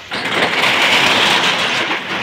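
A shop's roller shutter being pulled down, its slats giving a loud, continuous rattle that begins just after the start and eases off near the end.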